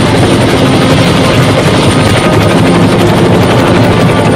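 Helicopter rotor blades chopping loudly and fast, a sound effect for a helicopter passing close overhead.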